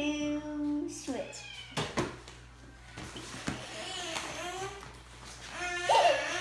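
Children's voices without clear words: a held, sung-out vowel at the start, then quiet murmurs. About two and three and a half seconds in come a couple of short knocks as the cloth lunchboxes are swapped across the table.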